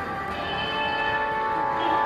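Church bells ringing, with long-held overlapping tones.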